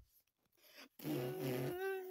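Near silence for about a second, then a person's voice murmuring "mm-hmm" in the second half.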